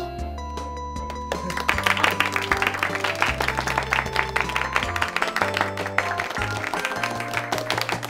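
Background music with a bass line and melody. About two seconds in, a classroom of students starts applauding, and the clapping carries on until near the end.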